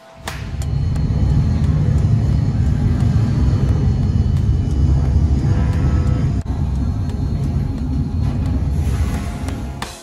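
Loud, steady low rumble from an America's Cup sailing simulator ride, setting in just after the start and dying away near the end, with music under it.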